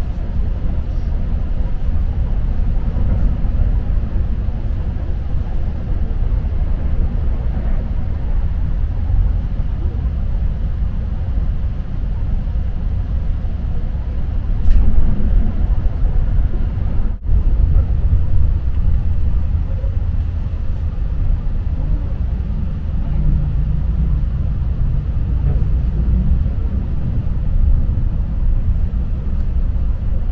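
Cabin noise of a Keihan limited express electric train running at speed: a steady low rumble of wheels on rail. About fifteen seconds in it grows louder for a couple of seconds as another train passes close by on the adjacent track.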